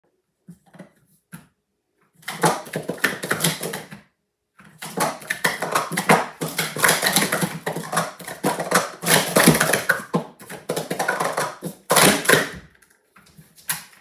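Plastic sport-stacking cups clattering in fast runs of dense clicks and taps as they are stacked up into pyramids and brought back down on a mat, with a brief pause about four seconds in. The clatter stops a little before the end.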